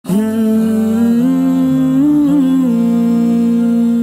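Hummed vocal intro of a nasheed, starting abruptly: wordless long held notes that glide slowly from pitch to pitch.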